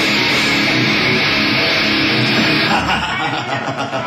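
Live rock band playing loud, with distorted electric guitar and drums. The dense wall of sound thins out about three seconds in, leaving separate hits and strums.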